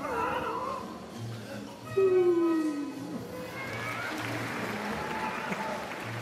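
Circus band playing comic music: a low sliding note falls in pitch twice, over a repeating bass beat, with audience noise rising in the second half.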